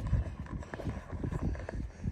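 Wind buffeting a phone microphone outdoors: an irregular low rumble with soft bumps, and no clear pitched sound.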